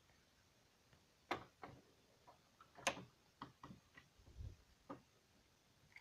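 Faint, irregular clicks and light knocks, about a dozen of them, the loudest a little over a second in and near three seconds in, with a duller thud in between.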